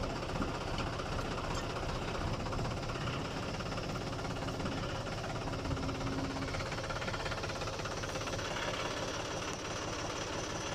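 John Deere diesel tractor engine idling steadily.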